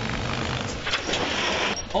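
Old vehicle engines running on a beach, a rough rushing noise without a clear pitch, swelling louder a little after a second in.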